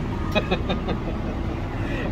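Steady low rumble of vehicle and traffic noise, with a few short ticks and a brief vocal sound about half a second in.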